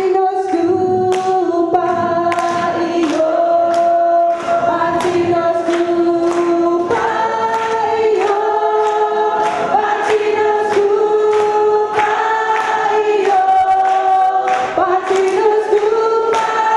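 A group of voices singing a song together in chorus, with sharp claps keeping a steady beat about twice a second.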